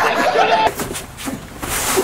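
A voice chanting or singing in held, stepping notes, breaking off about two-thirds of a second in; then a quieter, noisy stretch that swells with hiss near the end.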